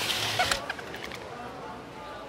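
Cartoon sound effects on an animated end card. A loud noisy rush stops abruptly about half a second in, followed by short squeaky chirps that fade away.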